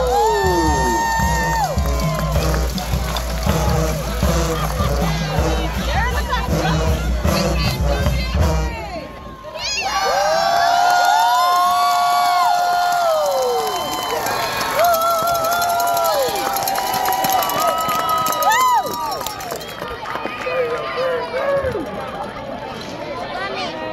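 High school marching band playing with drums and brass, cutting off sharply about nine seconds in. After that the crowd cheers and yells, with long held shouts.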